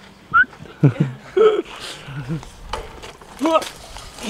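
Short wordless vocal exclamations from a person, about five brief calls sliding up and down in pitch, with a few light clicks and rattles of a wire-mesh gate being handled in between.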